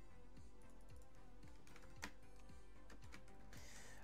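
Faint retrowave synthwave background music with a steady kick-drum beat, and a single sharp click about two seconds in.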